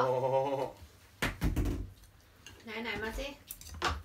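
Metal cutlery clinking against ceramic bowls during a meal, with a few sharp clinks about a second in and again near the end.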